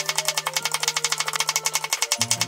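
Kitchen knife chopping quickly through thin sticks of crisp white vegetable on a wooden cutting board, in rapid even strokes of about ten a second.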